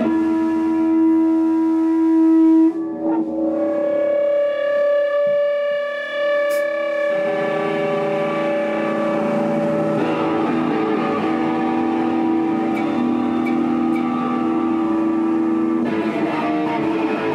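Electric guitar played through a distorted amplifier, holding long steady notes that ring on; the pitch changes about three seconds in and again about seven seconds in.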